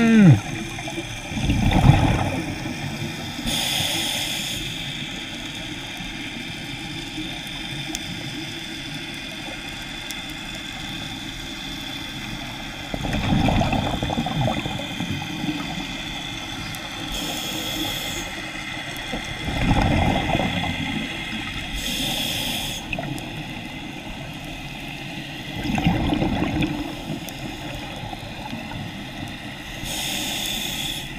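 Scuba diver breathing through a regulator underwater: a short hiss on each inhale, then a rush of exhaled bubbles a couple of seconds later, repeating every several seconds over a steady underwater hiss.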